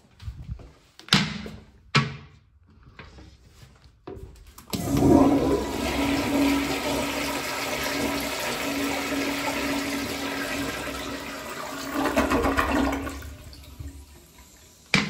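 Two sharp knocks and then a click. About five seconds in, a 1950s Standard Madera toilet flushes with a loud rush of water and a steady low hum through it, tailing off near the end.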